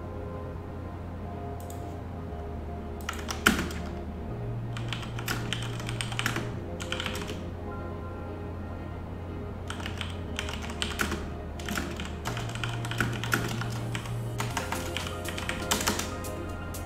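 Computer keyboard typing in several short bursts of quick keystrokes, over background music with a low bass line that shifts note every couple of seconds.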